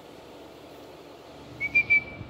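A whistle blown in three quick short blasts at one steady, fairly high pitch near the end: a recall signal calling the dog back.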